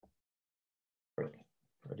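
Silence, broken a little over a second in by a man's short voiced sound that starts suddenly and fades quickly, then his speech beginning just before the end.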